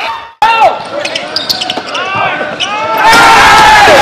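Game sound from a basketball court in a gym: ball bouncing and sneakers squeaking, with voices around. About three seconds in, a loud rushing sound effect takes over.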